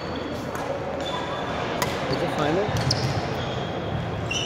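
Badminton play in a large echoing gym: sharp racket-on-shuttlecock clicks, short squeaks of sneakers on the wooden court and dull thuds of footfalls, over background voices from the other courts.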